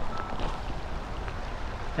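Wind on the camera microphone: an even hiss over a steady low rumble.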